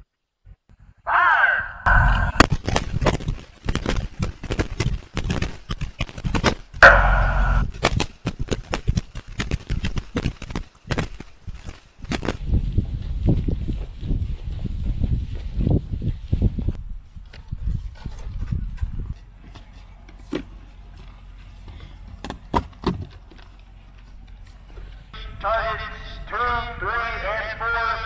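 Small-arms fire on a shooting range: many rifle and pistol shots from several shooters, rapid and overlapping, loudest about seven seconds in and thinning out after about twelve seconds, with a few scattered shots until about seventeen seconds.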